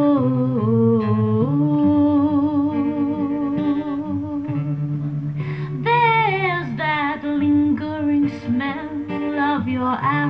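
A woman singing a wordless, humming melody with wavering held notes over strummed acoustic guitar chords.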